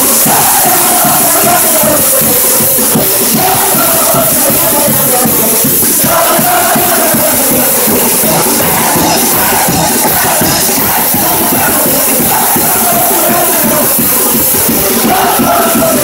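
Live brass street band playing a lively tune: trombone, tenor saxophone and sousaphone over a steady snare-drum beat, loud throughout, with a large crowd cheering along.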